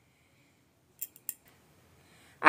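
Near silence, broken about a second in by a quick run of three or four light, sharp clicks.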